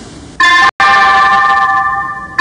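A loud sustained chord of several steady high tones, starting about half a second in, cut out for an instant just after, then held until it drops away near the end.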